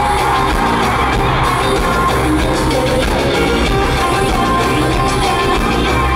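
Live pop-rock band music played loud through a concert PA and recorded from the audience, running continuously.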